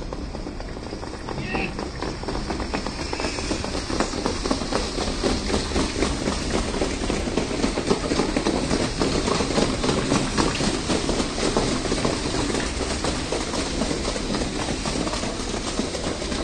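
Hoofbeats of a group of harness trotters pulling sulkies on a sand track, a rapid clatter that grows louder over the first several seconds as they draw close, then keeps on.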